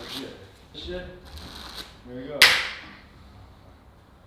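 A single sharp crack about two and a half seconds in, fading out quickly, with faint voices in the background before it.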